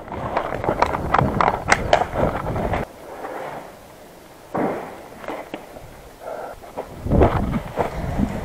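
Movement through dense undergrowth: rustling leaves and branches with sharp snaps and footfalls, busy for about three seconds, then quieter, with short bursts of rustling a little after halfway and near the end.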